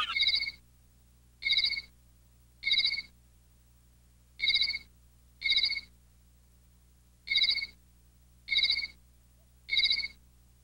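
A computer sound effect: a short electronic trill, like a ringtone, repeated eight times at uneven gaps of about one to two seconds, each lasting about half a second.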